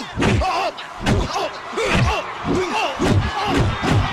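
Film fight sound effects: a rapid run of punch and kick impacts, about three thuds a second, mixed with short grunts from the fighters.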